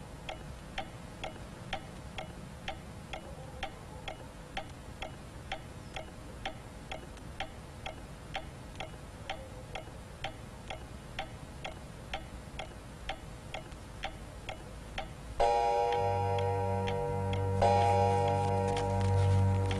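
Wooden pendulum mantel clock ticking steadily, about two and a half ticks a second. About fifteen seconds in, louder music comes in abruptly over it.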